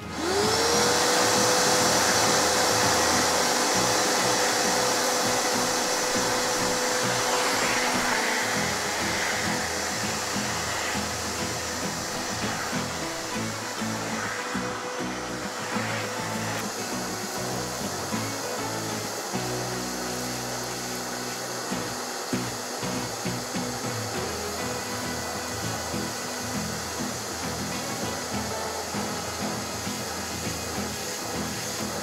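Canister vacuum cleaner switched on right at the start, its motor whine rising quickly and then holding steady as the nozzle is worked over artificial turf.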